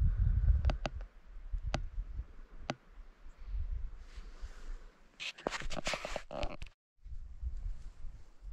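Low wind rumble on the camera's microphone with scattered sharp clicks and a spell of rustling from the camera being handled. The sound cuts out completely for a moment near the end, at an edit.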